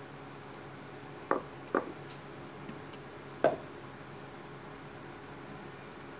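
Quiet hand crocheting with a metal hook and thin cord under a faint steady hiss. Three short clicks stand out, two close together about a second in and one more about two seconds later.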